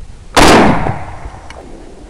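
A single rifle shot about a third of a second in, loud enough to hit full scale, then dying away over about half a second, fired at a wild boar.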